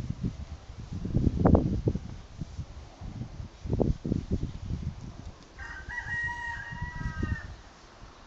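Wind buffeting the microphone in irregular gusts, with a rooster crowing once in the second half, a single call lasting about two seconds.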